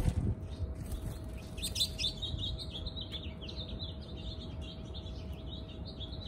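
Songbird chirping: a quick, continuing run of short high notes starting a couple of seconds in, preceded by a sharp click at the start.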